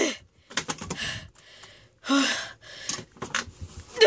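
Short straining huffs and gasps of breath, about one a second, mixed with light clicks and knocks of a plastic toy suitcase bumping against wooden dollhouse stairs as it is forced upward.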